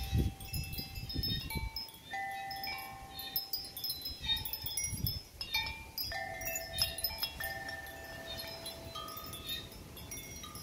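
A hanging wind chime of metal tubes struck by a wooden clapper, ringing in irregular, overlapping clear tones. A low rumble is heard in the first second or two and briefly again about five seconds in.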